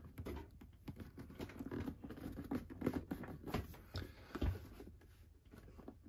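Hands handling a large cardboard box set and its plastic-wrapped contents: faint, scattered light taps, scrapes and rustles as the stiff panels are lifted and moved.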